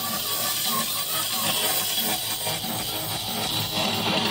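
Heavy metal band playing live, with electric guitar to the fore.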